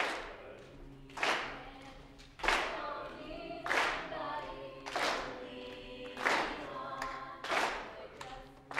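Mixed-voice a cappella group singing held chords in harmony, with a sharp, noisy beat about every second and a quarter.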